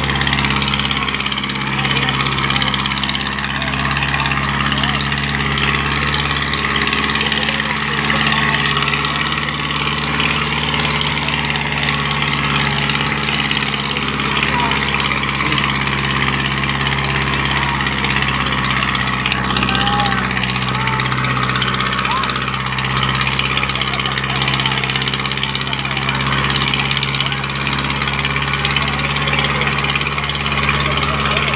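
Farmtrac 6055 tractor's diesel engine running steadily under load as it pulls two disc harrows through tilled soil.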